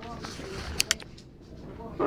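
Faint voices in the background, with two sharp clicks close together just under a second in.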